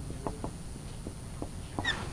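Marker writing on a whiteboard: a series of short, light taps and scratches as the letters of a word are written.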